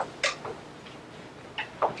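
A few light clicks and knocks, in two close pairs about a second and a half apart.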